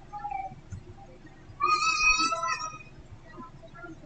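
A high-pitched animal call, held about a second, about halfway through, preceded by a short fainter falling call.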